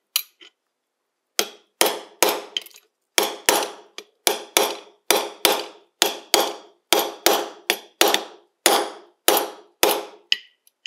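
A small hammer tapping a steel punch held against a pocket watch case, a steady run of about twenty sharp metallic taps, each ringing briefly, roughly two to three a second, starting about a second and a half in.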